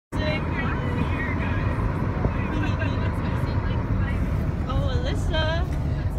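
Steady low rumble of a car driving, heard from inside the cabin, with faint voices about five seconds in.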